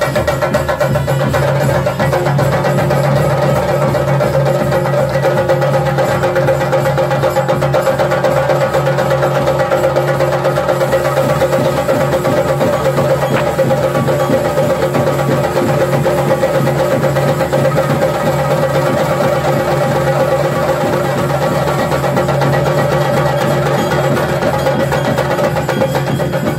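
Chenda drums beaten with sticks in a fast, unbroken roll of strokes, over a steady droning tone, as Theyyam dance accompaniment.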